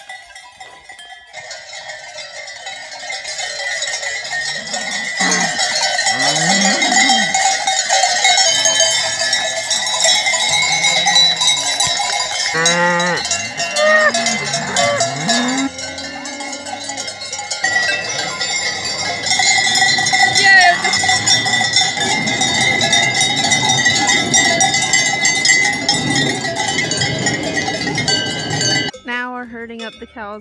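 Many cowbells clanging and ringing without a break on a herd of cattle walking down a road. They grow louder over the first few seconds as the herd comes near, and stop abruptly about a second before the end.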